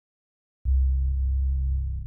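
Trailer sound-design hit: a deep, steady bass tone starts suddenly out of dead silence about two-thirds of a second in, holds, and cuts off abruptly.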